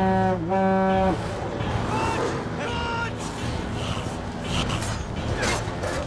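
The Horn of Gondor, a large war horn, blown in one long low blast that dips briefly in pitch and stops about a second in; film score and battle noise follow.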